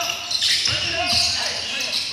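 Indoor basketball game: sneakers squeaking and the ball on the court, with background voices echoing in a large gym.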